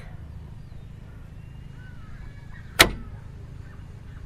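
A 65 A three-pole magnetic contactor pulling in with a single sharp clack nearly three seconds in, as the over/under voltage monitor is set back into range and re-energises its coil, restoring the three-phase supply. A steady low hum runs underneath.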